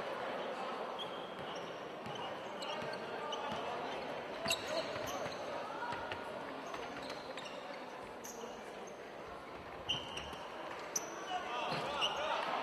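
Basketball bouncing on a wooden gym floor, a few sharp thuds over the chatter of voices in a large sports hall.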